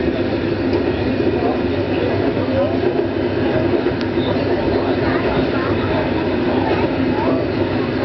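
Meiringen-Innertkirchen-Bahn railcar running steadily along the track, heard from inside its rear cab.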